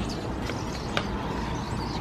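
Outdoor ambience through an open window: a steady wash of noise with a low rumble, under the faint chatter of a large flock of small birds on the ground. Two faint clicks come about half a second apart.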